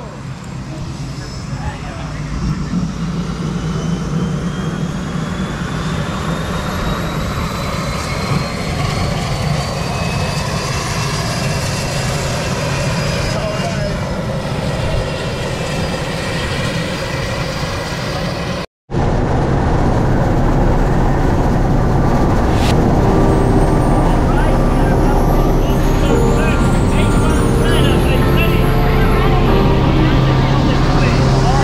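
Light aircraft engines running on the ramp, a steady drone with a high whine that slowly rises in pitch. After a cut, the same engines are heard from inside the cabin, louder and steadier.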